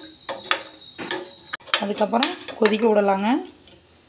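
Metal ladle clinking and scraping against a stainless-steel pan while stirring a thick curry, with a few sharp clinks in the first second and a half.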